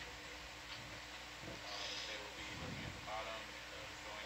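Faint, indistinct voices over a steady electrical hum.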